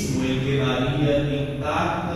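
A man chanting a prayer of the Mass on sustained, nearly level notes, amplified through a microphone.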